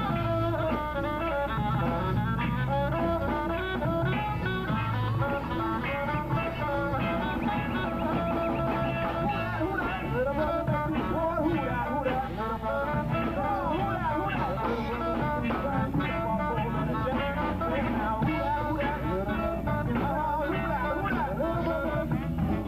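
Live band playing a steady instrumental groove, with drum kit, saxophone and guitar.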